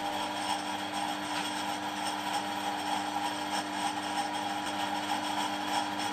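A steady hum runs throughout. Light metallic handling noises sit over it as a lathe chuck key is turned and a steel workpiece is handled at the chuck.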